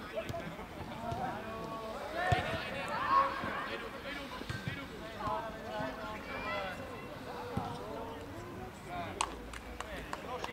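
Young footballers and people at the pitch calling and shouting to each other, with no words coming through clearly. A few sharp thuds of the ball being kicked come through, two of them around two to three seconds in and one near the end.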